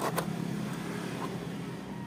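Steady low background noise with a faint hum, and one light click just after the start as an RCA plug is worked into the side jack of a TV.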